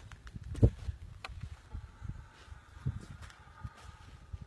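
Dull thumps and scuffling as a man and a brown bear grapple, with one louder thump about two-thirds of a second in and another near the end.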